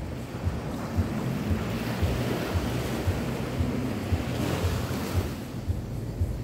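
Small waves washing up a sandy beach, the hiss of one wash swelling and peaking about two-thirds of the way through. A soft low thud repeats about twice a second underneath.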